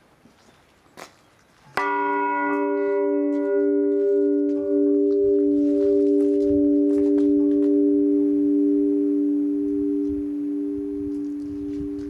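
1840 James Duff bronze church bell struck by its clapper about two seconds in: a bright clang whose higher overtones die away within a few seconds, leaving the low hum notes ringing on with a slow, even pulsing.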